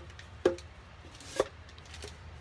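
Two sharp knocks about a second apart, the first louder: a can or mould striking the side of a mixing bowl while a crumbly powder mixture is packed by hand.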